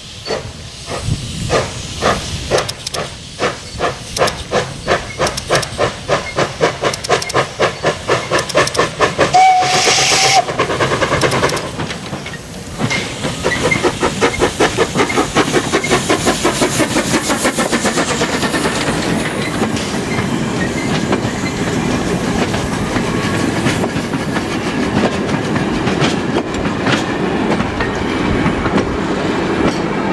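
Steam tank locomotive pulling away with its train: exhaust chuffs start slow and quicken steadily, with a brief whistle about nine and a half seconds in. The locomotive and its passenger carriages then roll past, wheels clacking over the rail joints.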